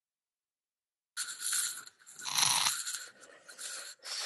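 Rustling and rubbing noise on an earbud headset microphone, in three short bursts after a second of dead silence.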